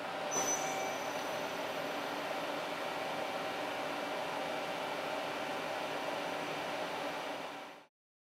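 Steady background noise of a machine shop: an even hiss with a faint mechanical hum. It fades in at the start and fades out just before the end.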